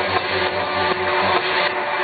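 Live electronic music from a concert PA, heard from the crowd: a pulsing bass line over a beat and layered synths. The bass drops out after about a second and a half.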